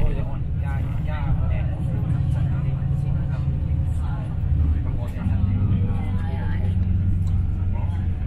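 Low, steady engine and road rumble heard from inside a moving vehicle's cabin, its note shifting about five seconds in, with people talking over it.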